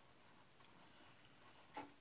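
Faint scratching of a pencil drawing on paper, with one short, louder sound near the end.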